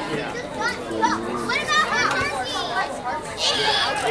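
Many young voices shouting at once, overlapping and high-pitched: kids calling out on the sideline and in the stands during a youth football kickoff.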